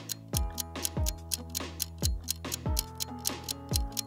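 Background electronic music during a quiz countdown: a steady kick-drum beat and fast, even clock-like ticking over held synth chords.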